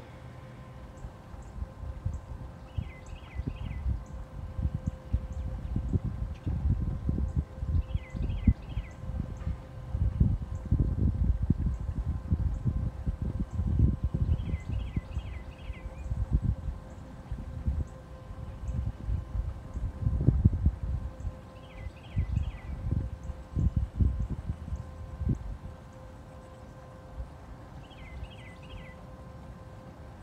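Wind buffeting the microphone in low, uneven rumbles that swell and fade, dying down near the end. A bird repeats a quick run of three or four high notes about every five to six seconds, over a faint steady hum.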